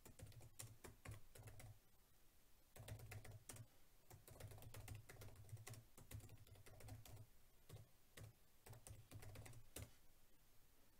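Faint typing on a computer keyboard: runs of quick keystrokes broken by a couple of short pauses.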